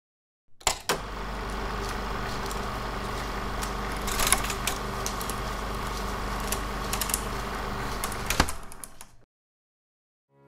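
Film projector sound effect: a steady mechanical whirr with a low hum, opening with two sharp clicks about half a second in. A few more clicks follow, a loud one near the end, before it stops suddenly.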